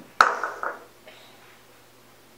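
A measuring cup knocks against the rim of a blender jar as sugar is tipped in: one sharp clink with a short ring just after the start, and a softer knock about half a second later.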